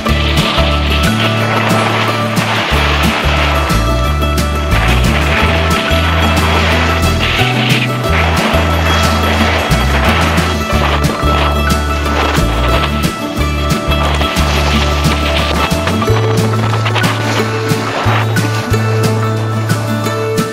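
Background music with a bass line that changes note every second or so.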